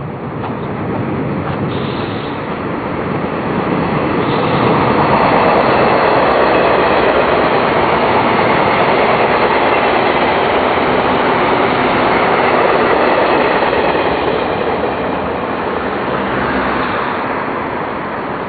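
A train passing close by: a loud, steady running noise that builds over the first few seconds, holds through the middle, and fades toward the end.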